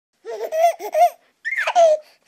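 A baby laughing: a quick run of short giggles, then after a brief pause a longer high laugh that falls in pitch.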